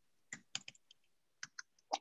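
Faint keystrokes on a computer keyboard: about five or six separate key presses, typing a five-digit number.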